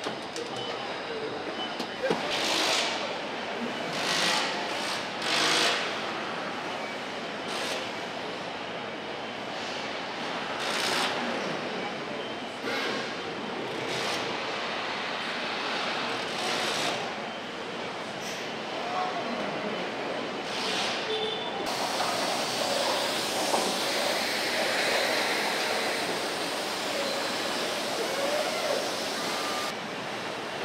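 Car assembly plant floor ambience: steady machinery noise broken every few seconds by short hisses, typical of pneumatic tools and air releases. About two-thirds of the way in, the background noise abruptly turns brighter and denser.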